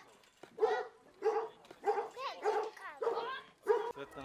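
Playground seesaw squeaking at its pivot as it rocks up and down: a run of short, same-pitched squeaks, about one every 0.6 s.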